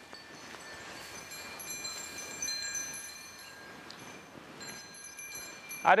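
Faint high ringing tones, like small bells or chimes, sounding on and off over a light background hiss. A shout of "arre" breaks in at the very end.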